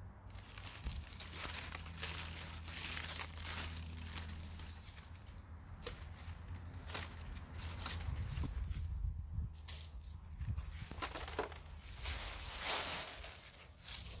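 Large, browned zucchini leaves rustling and crackling as they are pulled and cut off the plant, in irregular bursts with short sharp crackles.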